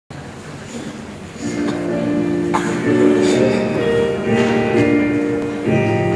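Instrumental music, a short introduction of held chords that begins quietly and fills out about a second and a half in, ahead of the choir's singing.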